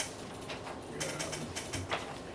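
Sheets of paper being handled and shuffled on a table, rustling in short bursts, with a brief low murmur about a second in.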